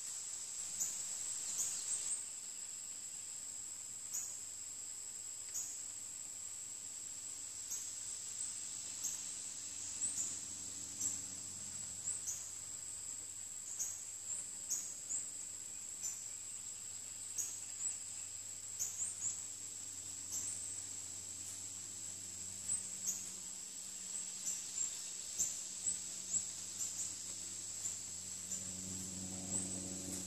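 A steady, high-pitched insect chorus with short, sharp high chirps repeating every second or so. A faint low drone sits underneath and grows a little near the end.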